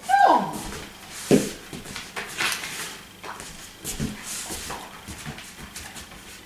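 A short voiced call falling in pitch, then a second one about a second later, likely the handler's commands. Then a run of short scuffs and taps as a kelpie shifts its paws on a wooden floor, moving round to the handler's side.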